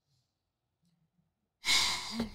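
Near silence, then about a second and a half in a woman lets out a loud, breathy sigh.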